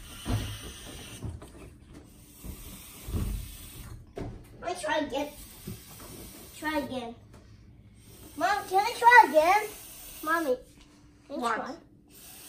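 Breath hissing as a stretchy balloon ball is blown up through its stick, with a few soft thuds. Wordless children's voice sounds come in between, loudest a little past the middle.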